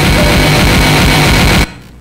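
A loud burst of harsh noise played back through loudspeakers, lasting about a second and a half and cutting off suddenly.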